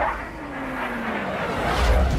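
Fighter jets passing: an engine tone falling in pitch, then a loud rushing whoosh with a low rumble swelling near the end as jets sweep by.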